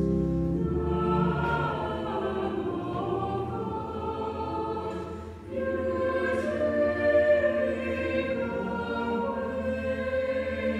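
Church choir singing in several-part harmony, the voices moving from note to note in long phrases; the sound dips briefly about five seconds in, then a louder phrase begins.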